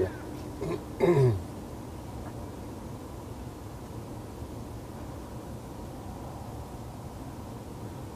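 A man clearing his throat once, briefly, about a second in, then steady low background noise.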